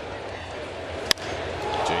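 A single sharp crack of a wooden baseball bat squarely hitting a pitch, about a second in, over a steady crowd hum; the ball is hit for a home run.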